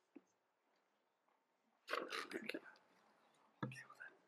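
Hushed whispering close to a microphone, a short burst of breathy whispered words about halfway through and another brief one near the end, in an otherwise very quiet room.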